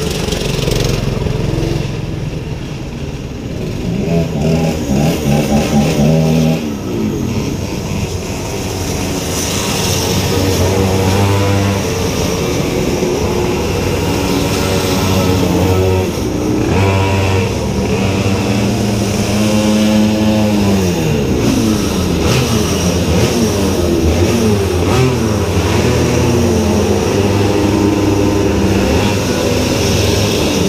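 Go-kart engines running close by, revved up and down several times, the pitch rising and falling with each rev over a steady running drone.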